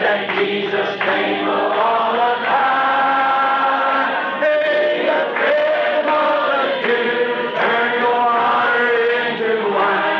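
Congregation singing a gospel hymn in slow, long-held notes, heard through a narrow-band old tape recording.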